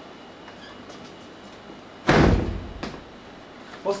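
A single loud slam or thump about two seconds in, dying away over about half a second, followed by a smaller knock.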